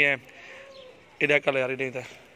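A man's voice speaks a few short syllables about a second in. Under it, a faint, low, steady bird call carries on in the background.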